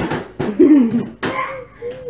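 Short wordless voice sounds from a toddler and a woman: brief exclamations and a sharp cough-like burst about a second in.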